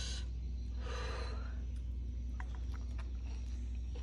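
A short, noisy breath about a second in, the kind of sharp breath someone takes while eating fiery chilli-laden rice, followed by a few faint mouth clicks of chewing.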